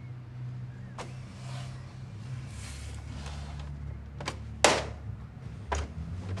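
Office printer running: a steady low motor hum with a few sharp clicks, and one louder clack a little over halfway through.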